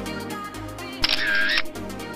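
Electronic background music with a camera shutter sound effect about a second in, lasting about half a second and louder than the music.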